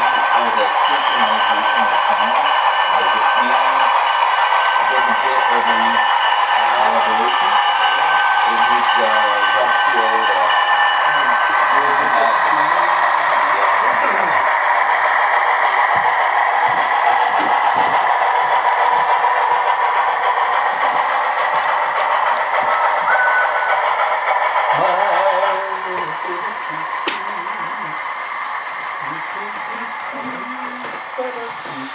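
HO-scale model train running along the layout track, a steady mechanical hum with several held tones that drops in level about 25 seconds in. Low conversation runs underneath.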